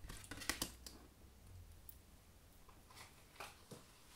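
Tarot cards being handled and laid on a table: a few quick soft taps and slides of card stock in the first second, then a few fainter ticks near the end.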